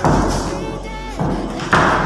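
Three loud thuds: at the start, just after a second in, and near the end. A woman laughs once, and a pop song plays in the background.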